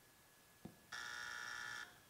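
Game-show wrong-answer buzzer: a single steady electronic buzz about a second long that starts and stops abruptly, marking an incorrect answer. A faint click comes just before it.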